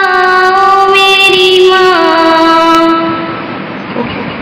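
A voice singing long held notes of an Urdu poem, stepping down in pitch twice and fading out near the end.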